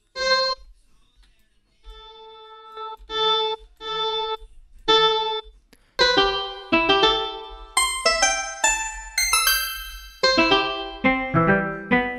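A sampled plucked note played as an instrument through Ableton's Simpler sampler. First a few notes at one pitch, then from about six seconds in a run of notes at changing pitches, each ringing and fading away.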